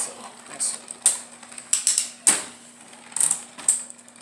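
Beyblade spinning tops battling in a plastic stadium: sharp plastic clacks at uneven intervals as the tops knock into each other and the stadium wall, over a faint steady hum from a spinning top.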